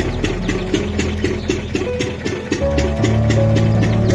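Background music with a fast, steady beat over sustained notes and a low bass.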